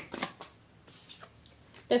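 A deck of tarot cards being shuffled by hand: a quick run of card flicks that stops about half a second in, followed by a quiet stretch before speech begins near the end.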